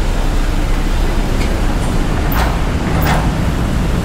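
Steady traffic noise with a low rumble, and two brief sharp hissing sounds about two and a half and three seconds in.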